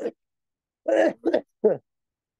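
A person laughing briefly: three short voiced bursts about a second in, the last one falling in pitch.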